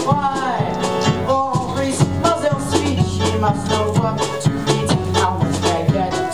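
Upbeat show-tune accompaniment with a steady beat and a melodic line, played for a stage dance number.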